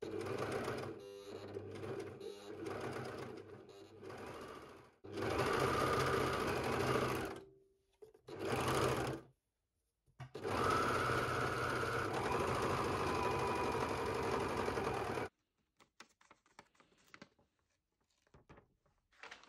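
Overlocker (serger) stitching a seam in jersey fabric, running in several bursts with brief pauses between them, the longest about five seconds, then stopping about three-quarters of the way through.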